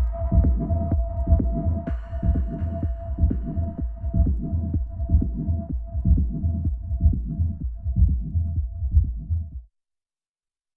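Techno track with a steady four-on-the-floor kick drum, about two beats a second, over deep bass and a held synth tone, with a hiss-like hi-hat layer coming in about two seconds in. The sound cuts off abruptly to silence near the end.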